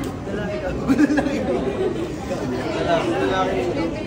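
Indistinct chatter: people talking at once, with no clear words.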